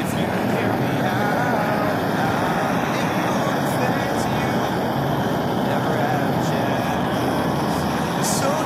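Propane gas torch burning with a steady, dense hiss-roar of gas and flame, heating a plastic phone body until it chars and glows. A song with a singing voice plays faintly underneath.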